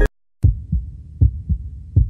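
Background music cuts off suddenly, and after a short silence a heartbeat sound effect starts: low double thumps, lub-dub, about three beats in an even rhythm.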